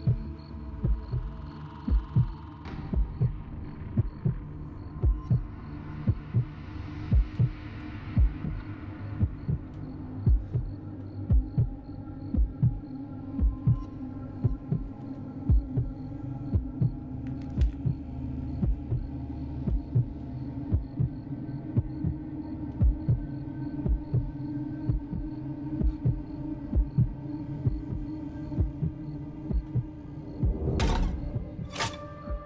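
Heartbeat sound effect: a steady rhythm of low thumps over a sustained low humming drone, a suspense cue in a film's sound design.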